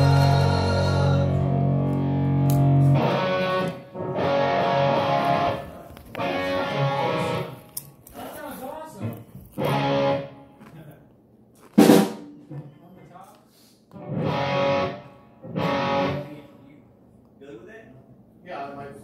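Guitar played loosely in short strummed bursts with pauses between them, after a chord held at the start; one sharp, loud stroke comes about two-thirds of the way through.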